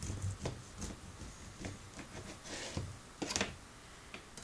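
Serrated knife sawing a slice off a dense, crusty baked loaf of whole-wheat and oat breakfast bar: a series of short rasping strokes, the loudest near the end as the slice comes free.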